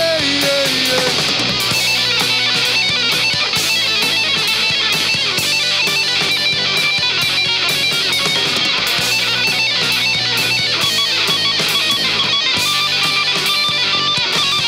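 Rock band playing live at full volume: distorted electric guitars, bass guitar and a drum kit with steady cymbals.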